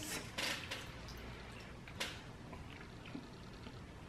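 Faint eating sounds as a spoonful of soup is taken and chewed, with one light, sharp click about two seconds in.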